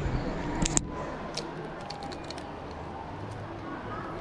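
Plastic clothes hangers clicking and clacking as jerseys are pushed along a clothing rack, with a sharp double click about a second in and lighter scattered clicks after it.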